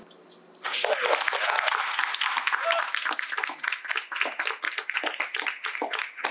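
A small group applauding, starting about a second in and thinning out toward the end.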